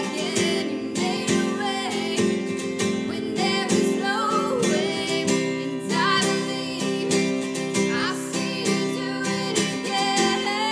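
A woman singing solo while strumming a steel-string Taylor acoustic guitar in a steady rhythm.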